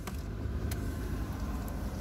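A car running: a low, steady rumble with a few faint clicks.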